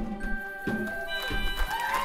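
The last note of a school choir and piano song rings out. About halfway through, audience members start whooping and cheering as the song ends, and the cheers grow toward the end.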